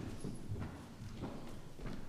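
Footsteps of hard-soled shoes on a wooden chancel floor: about four steps, roughly two a second.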